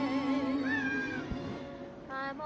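A tabby cat meows once, a short rising call held for about half a second, over a slow romantic song sung by a woman with vibrato. There is a soft low bump just after it.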